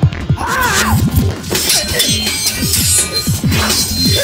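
Action-film fight soundtrack: music with a heavy, fast beat, over which glass shatters and blows crash, with noisy bursts about one and a half seconds in and again near the end.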